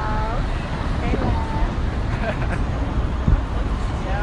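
Street noise through a phone's microphone: a steady low traffic rumble with a few brief voices near the start and about a second in, and a low thump a little over three seconds in.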